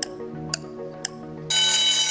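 Quiz-show timer music ticking about twice a second. About one and a half seconds in, a loud, bright signal tone cuts in and holds for about a second, marking the end of the 20-second answering time.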